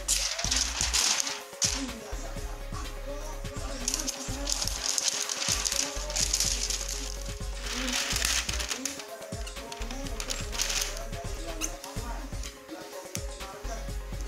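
A foam block scrubbed back and forth over the bare glass of an LCD TV panel, a hissy rubbing sound in several long bursts of strokes. A steady low hum and faint music and voices sit underneath.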